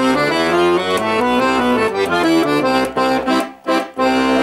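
Giulietti piano accordion's left-hand bass buttons playing a C scale, one held note after another in steps. Near the end the notes turn short and detached.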